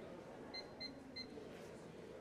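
Three short electronic beeps from a digital scale's keypad as a price is keyed in.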